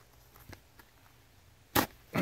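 A hand pressing into sleet-crusted snow: a couple of faint crackles, then one short, sharp crunch near the end as the crust gives way.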